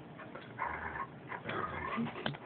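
Dog vocalizing twice in short bursts of about half a second each.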